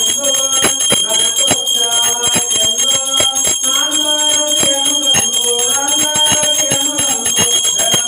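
Small brass temple hand bell (ghanta) rung without a break during puja, its clapper striking several times a second so the ringing never dies away. A melodic line of pitched tones runs underneath.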